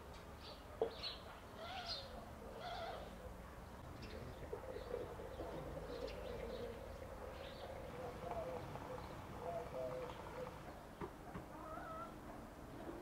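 Birds chirping in short, high calls, with a lower wavering call running through the middle and a single sharp click about a second in.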